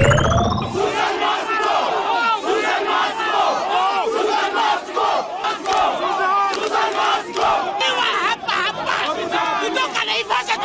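A crowd of people shouting and yelling at close range, many agitated voices overlapping in a scuffle. It opens with a brief whooshing sweep right at the cut.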